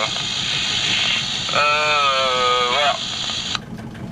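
Marine VHF radio loudspeaker hissing with reception static, carrying a long drawn-out hesitant voice sound from the distant sailor in the middle. The static cuts off suddenly near the end as the transmission ends.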